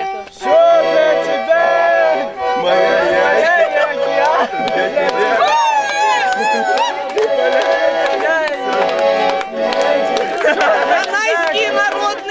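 Two small Russian button accordions (garmons) playing a lively folk tune, with several men's voices singing along loosely.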